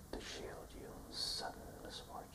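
A man whispering lines of a poem in short breathy phrases, with a strong hissing s-sound about a second in.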